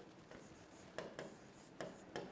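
Faint scratches and light taps of a stylus writing on an interactive touchscreen board: a few short strokes, around a second in and again near the end.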